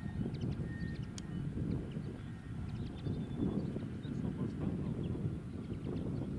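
Wind buffeting the microphone: an uneven low rumble, with faint short chirps and ticks scattered above it.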